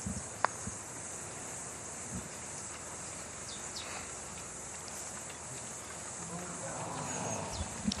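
A putter striking a golf ball once, a single sharp click about half a second in, over steady outdoor background hiss.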